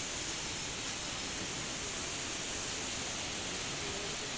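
Steady, even hiss of background noise with no distinct sound standing out.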